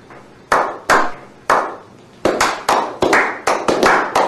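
A slow clap by a small group. Three single hand claps come about half a second apart, then more claps join in and speed up to about four a second. Each clap has a short echoing tail.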